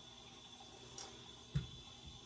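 Faint trickle of low-pressure well water from a kitchen faucet filling a glass mason jar, with a soft knock about one and a half seconds in.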